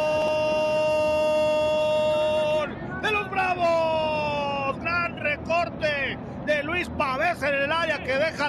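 TV football commentator's long drawn-out goal call, a single held shout that cuts off about two and a half seconds in. It is followed by a second long call falling in pitch, then rapid excited commentary.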